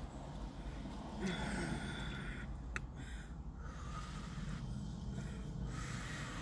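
Mouth breathing and chewing around a mouthful of red beans and rice that is still hot: two long airy breaths, one a little after the start and one near the end, with a short click in the middle, over a low steady hum.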